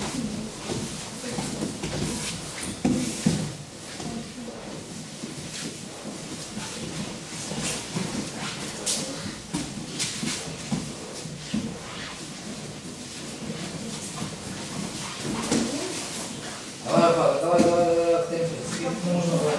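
Indistinct chatter of children's and adults' voices with scuffing and light knocks of bodies and judogi on the tatami mats during a group crawling drill. A voice rises loudly about a second before the end.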